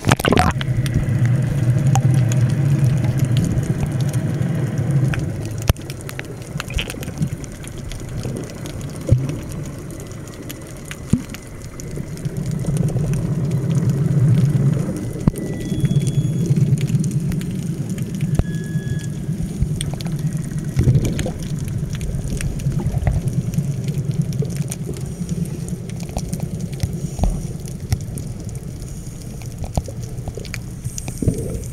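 Muffled underwater recording of scuba divers breathing through regulators, their exhaled bubbles coming as low rumbling surges lasting a few seconds each, with small scattered clicks.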